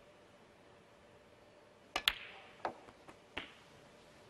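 Snooker shot: a sharp double click about two seconds in as the cue tip strikes the cue ball and the cue ball hits the black, with a short ringing after, then three lighter knocks of the balls running on as the black is potted.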